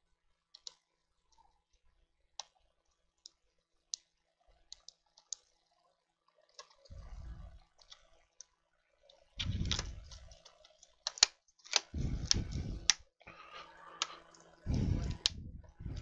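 Light plastic clicks as an Acer Aspire 5750's keyboard ribbon cable is worked into its connector. From about halfway on come louder knocks, clicks and rubbing as the keyboard is laid into the case and pressed down to clip in.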